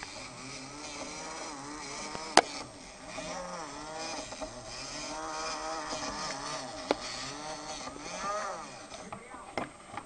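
Small electric motor of a USB hamster-wheel toy whining as the wheel spins, its pitch rising and falling in repeated swells. Two sharp clicks, a little over two seconds in and near seven seconds.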